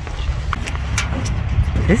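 Wind buffeting the microphone: a steady, fluctuating low rumble with a few faint ticks through it.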